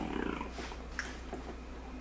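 A person's low, quiet vocal murmur in the first half-second, then a faint tick about a second in, over a steady low hum.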